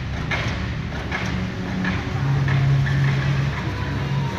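Car engines running in a large hall, a steady low rumble with one engine note swelling louder about halfway through, and faint regular ticks about once a second behind it.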